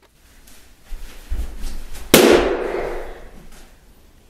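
A balloon bursting with one loud, sharp bang about two seconds in, ringing on for about a second in the bare room, after a few low thuds.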